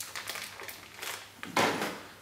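A single brief crunching rustle about one and a half seconds in, from hands handling things at the table; the rest is quiet room noise.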